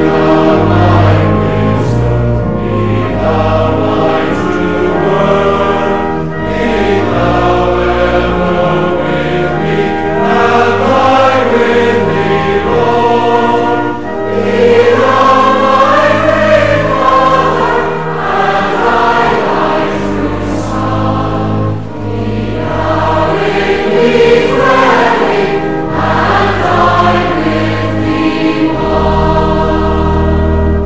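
A congregation singing a hymn together with organ accompaniment, voices and held organ chords running through a slow, steady melody.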